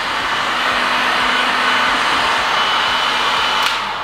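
Electric heat gun running, blowing a steady stream of hot air over a carbon skate boot shell to soften it for reshaping. The rushing air dies away near the end.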